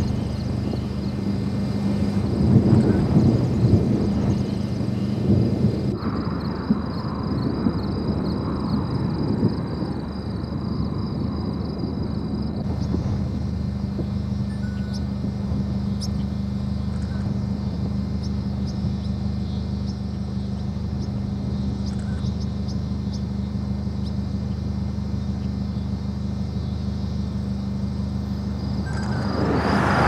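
Steady low rumble of wind and a vehicle's engine running. Near the end a semi-truck with a grain trailer passes close by, its noise rising sharply.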